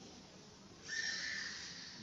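A man's breath drawn in close to a handheld microphone: a hissy intake with a faint whistling tone, starting about a second in and tailing off.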